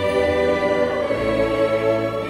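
Background music: a choir singing long held chords, changing chord a little past the middle.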